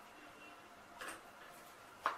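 Kitchen knife cutting through a steamed taro-leaf roll onto a plastic cutting board: a faint tick about halfway, then a sharper knock of the blade on the board at the very end, with little else.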